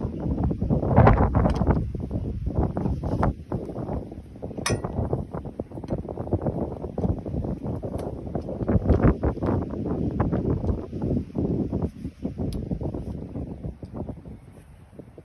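Wind buffeting the microphone in uneven gusts, with a few light metallic clinks from hand work on metal parts.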